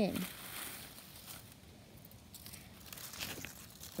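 Dry fallen leaves crinkling and rustling faintly as they are gathered by hand and dropped into a small plastic toy basket, in a few scattered crackles mostly in the second half.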